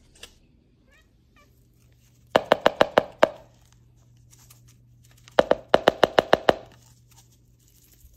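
Catnip container shaken in two quick bursts of rapid, evenly spaced knocks, about eight a second: the first about two and a half seconds in, the second about five and a half seconds in.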